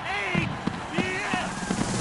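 Only speech: a baseball broadcaster's excited, high-pitched play-by-play call of a go-ahead home run, with short gaps between phrases.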